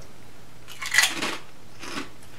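A kettle-cooked potato chip being bitten into and chewed: one loud crunch about a second in, then a shorter crunch near the end.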